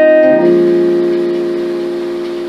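Piano-voiced keyboard playing drop-2 chords. An F7/A chord is sounding at the start, and a B-flat minor 7 chord is struck a little under half a second in, then held and slowly fading.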